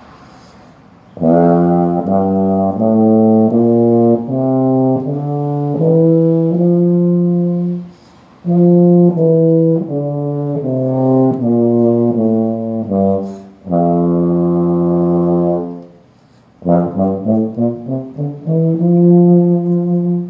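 Large-bore four-valve compensating euphonium playing a G major scale fingered with only the second, third and fourth valves. It climbs one octave note by note and comes back down, holds a long low note, then runs quickly up to a held note near the end.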